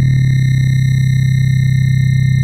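Electronic oscilloscope music: a synthesized stereo signal whose left and right channels drive an oscilloscope's horizontal and vertical deflection to draw shapes. It is heard as a loud, steady low drone with fixed high tones above it, its middle texture shifting in the first half second.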